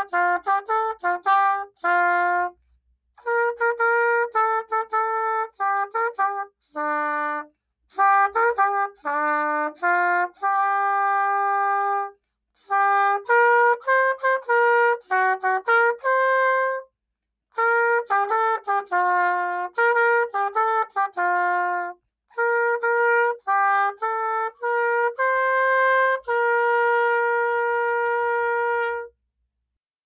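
Unaccompanied trumpet playing a holiday melody in short phrases with brief pauses between them, ending on a long held note near the end.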